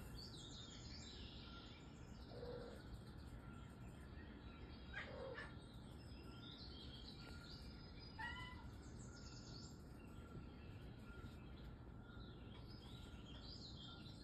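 Faint outdoor birdsong: many small high chirps throughout, with a few clearer calls, one of them a short, distinct call about eight seconds in.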